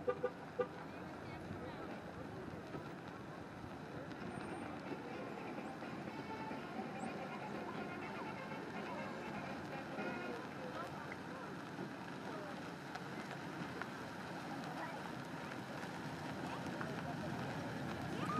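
A slow-moving parade pickup truck running under a steady murmur of onlookers' voices, with two short horn toots in the first second.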